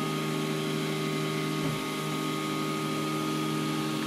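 An Ultimaker 2+ 3D printer running a print: a steady machine hum of motors and fan with several steady tones, which wobble briefly a little under two seconds in.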